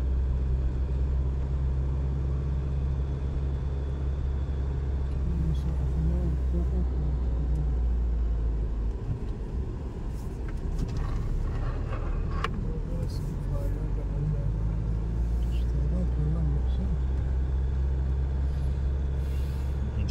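Steady low drone of a car's engine and tyres heard from inside the cabin while driving along a hill road, easing off briefly about halfway through.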